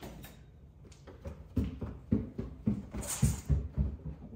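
A few light clicks as a metal baby gate is opened, then footsteps climbing a staircase: a run of heavy thumps about three a second.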